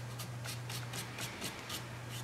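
Paintbrush bristles stroking across watercolour paper in quick, repeated strokes, about five soft scratches a second, as fur strands are painted in. A steady low hum sits underneath.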